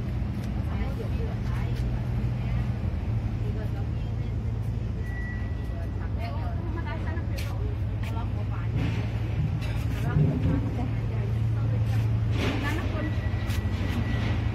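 A steady low mechanical hum under faint voices of people talking in the background, with a brief high thin tone about five seconds in and again near the end.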